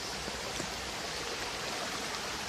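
A small stream running: a steady rush of water.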